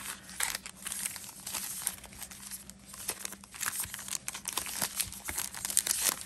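Foil trading-card pack wrappers crinkling as a stack of packs is handled and shuffled in the hands, an irregular run of crackles.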